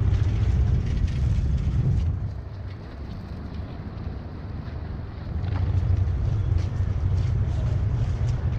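Wind buffeting the camera microphone, a low rumble that dies down about two seconds in and picks up again a few seconds later.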